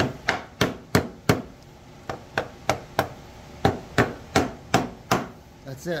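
Small wooden mallet tapping a glued wooden patch down into its chiselled recess in an oak board, driving it fully home. Light, even knocks about three a second, with a pause of about a second early on.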